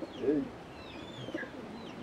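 Birds calling: a string of short, high chirps, each falling in pitch, repeating every half second or so.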